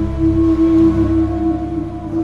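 Background film score: one sustained, slightly wavering held tone over a low rumble, slowly fading.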